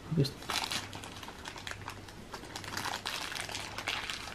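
Plastic packaging crinkling in short, irregular crackles as a small wrapped item is unwrapped by hand.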